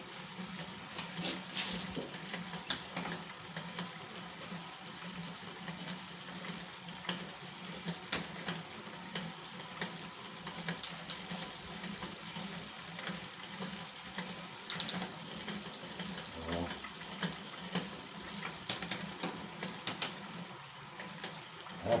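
Car alternator converted to a brushless motor, driving a bicycle's rear wheel through a chain: a steady low hum with the hiss and rattle of the spinning chain and sprockets. Sharp clicks come now and then as the rear gears are changed.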